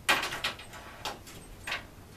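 A steel tape measure handled against a plywood board: one short scraping slide, then two fainter scrapes.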